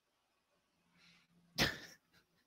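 Near silence, then about one and a half seconds in, a single short, sharp burst of breath from a man.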